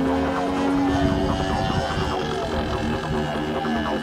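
Drone of a model aircraft's DLE-55 single-cylinder two-stroke petrol engine in flight, mixed under an electronic music track with a steady repeating pattern.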